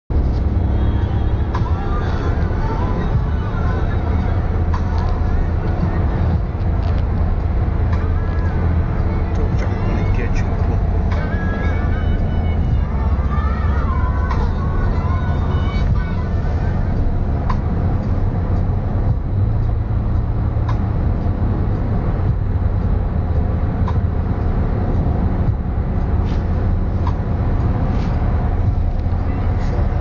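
Steady low rumble of a moving vehicle, with faint voices and music over it in the first half.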